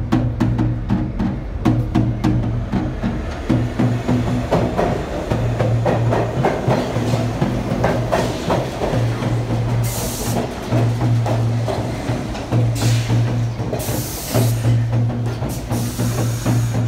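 A djembe-style hand drum played in a steady rhythm, over low droning notes that repeat in stretches of about a second. From about four seconds in, a subway train pulls into the station, its rumble rising under the drumming, with several short bursts of hiss in the second half as it comes to a stop.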